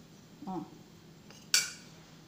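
A metal spoon clinks once against a ceramic dinner plate: one sharp, bright clink with a short ring about one and a half seconds in.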